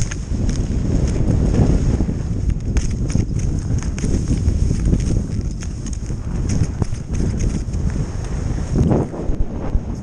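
Skis scraping and chattering over packed snow on a downhill run, with irregular sharp clicks and clatter, over heavy wind rumble on the camera's microphone.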